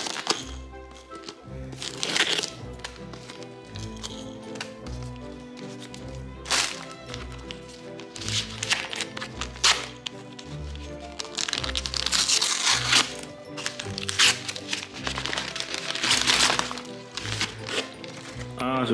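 Background music with a steady beat, over brown kraft wrapping paper being torn and crinkled in several bursts as a gift parcel is unwrapped.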